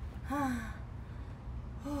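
A woman's short breathy gasp, falling in pitch, about a third of a second in, then the start of another brief falling exclamation near the end: she is out of breath from strenuous exercise.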